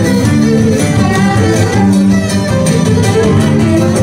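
Live Cretan dance music: a bowed Cretan lyra playing the melody over plucked laouto accompaniment, running at a steady loud level.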